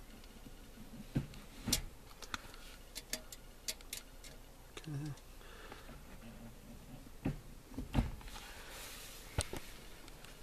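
Irregular sharp clicks and knocks from a steel tape measure and a manual gear lever being handled as the lever is moved through its travel. The loudest knock comes near the end.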